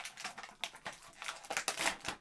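Plastic toy packaging crinkling and clicking as an action figure is taken out of its box, in irregular crackles that are loudest near the end.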